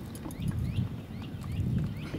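Water slapping and knocking against the hull of a small fibreglass boat, swelling twice, with a run of short, falling high chirps repeating about three times a second.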